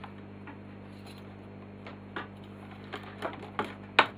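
Crocodile clips and wire leads being handled on a workbench: a few light clicks and taps from about two seconds in, with a sharp click at the end, over a steady low hum.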